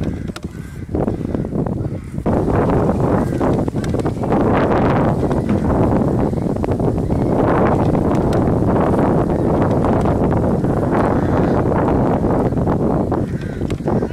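Steady rumble of wind buffeting the microphone, with a horse's hoofbeats on the arena surface as it canters.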